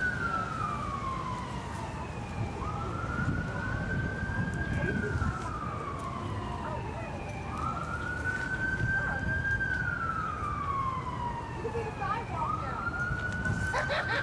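An emergency vehicle siren in wail mode: one high tone climbs, holds at the top, then slides slowly down, repeating about every five seconds for roughly three cycles over a low background rumble.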